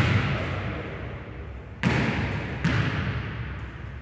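A basketball bouncing on a hardwood gym floor: three sharp thuds, one at the start, one near two seconds in and one shortly after, each ringing on in the hall's echo.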